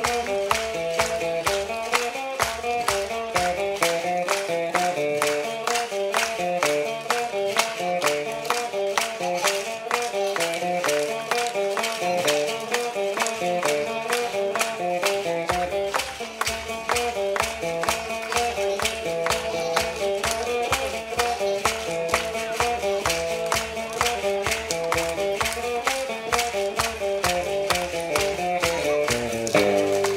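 A tune played on a homemade electric guitar with a suitcase body, note by note in a middle register, over a steady quick percussive beat.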